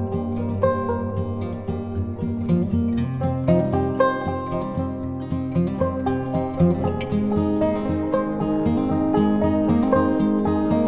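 Soft acoustic guitar background music: plucked notes ringing over held low notes in a slow, steady pattern.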